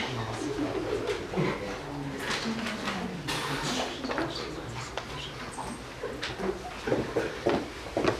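Quiet, indistinct murmured talk in a small room, low and soft, with scattered clicks and rustling throughout.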